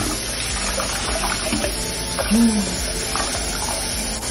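Kitchen faucet running steadily, its stream splashing over a tumbler and straw being rinsed in the sink.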